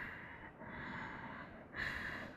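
A man breathing softly while holding a back-strengthening yoga pose, with a stronger breath near the end.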